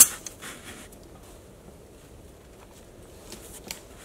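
A single sharp click, then a quiet outdoor background with faint, scattered rustles and small ticks, like light handling or movement in dry leaves.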